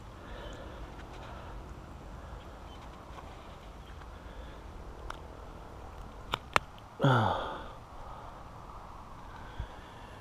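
Low rustle of hands handling a freshly caught largemouth bass, with two sharp clicks about six seconds in. A short falling 'uhh' from a man's voice follows a moment later.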